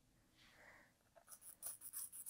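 White fabric marker scratching across quilted fabric as a guideline is drawn, in quick short strokes at about five a second starting just over a second in, after a soft rustle of a hand smoothing the fabric.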